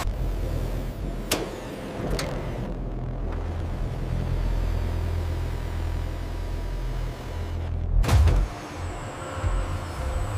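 Low machinery hum and rumble, with two sharp clicks a little over one and two seconds in and a heavier mechanical clunk about eight seconds in.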